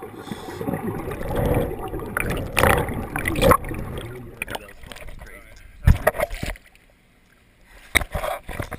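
Underwater bubbling and gurgling from scuba divers' exhaled air, muffled through a submerged camera, loudest in surges in the first half. Near the end a few sharp splashes come as the camera breaks the surface.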